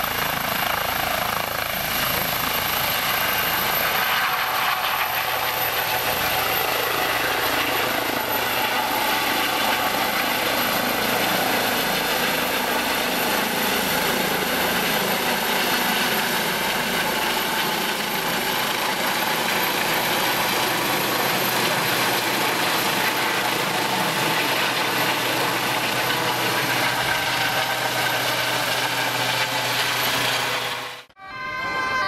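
Eurocopter EC135 air-ambulance helicopter lifting off and climbing away, its turbines and rotors running steadily at flight power: a constant whine of several tones over the rotor noise, with the deepest part thinning out a few seconds in.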